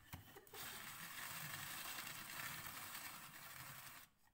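Hand-cranked rotary drum grater shredding carrots: after a few light clicks, a steady scraping of carrot against the turning metal grating drum starts about half a second in.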